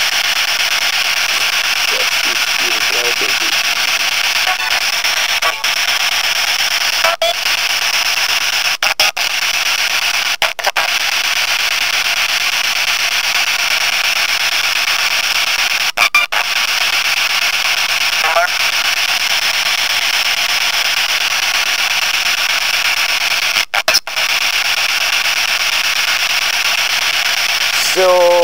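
Steady radio static hiss, cut by several brief dropouts and crossed by a few faint snatches of tone and voice, listened to for spirit voices.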